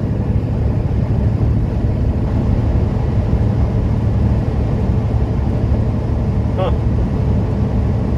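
Inside a semi truck's cab at highway speed: the steady low drone of the diesel engine and road noise.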